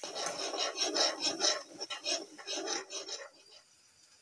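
A metal spoon scraping and stirring curry in a wok, rasping strokes about four times a second that stop a little after three seconds in.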